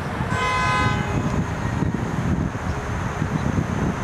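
Vehicle horn giving one short toot of about half a second, just after the start, over the low rumble of city street traffic.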